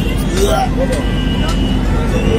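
Steady low rumble of a city bus running, heard from inside the passenger cabin, with brief bits of voices over it.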